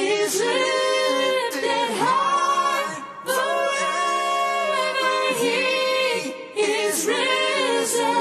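Unaccompanied voices singing a cappella in harmony, in sustained sung phrases with short pauses about three seconds in and again after six seconds.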